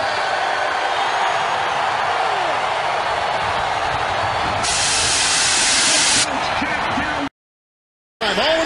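Stadium crowd noise, a dense steady cheering roar with a few voices in it. About five seconds in comes a loud hiss that lasts about a second and a half. The sound cuts off suddenly about a second before the end.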